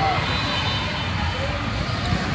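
Scattered voices and calls from players and spectators echoing in a large gym hall, over a steady low rumble.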